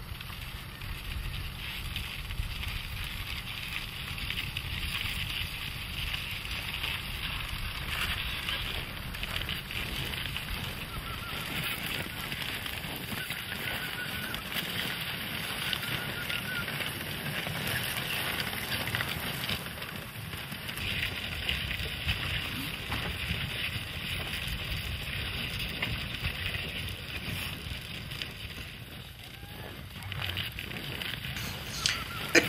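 Reindeer sledge train moving over snow: a steady hiss of sledge runners and hooves on the snow over a low wind rumble.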